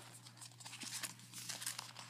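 Handmade duct-tape wallet being handled and its flap folded open, the tape giving a run of light, irregular crinkling and rustling.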